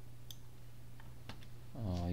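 A few faint computer mouse clicks over a steady low electrical hum, with a voice starting near the end.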